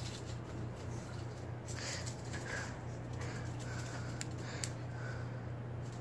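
A pug puppy's paws and claws scuffing and pattering faintly on concrete as she runs. A steady low hum runs underneath, and two light clicks come a little past the middle.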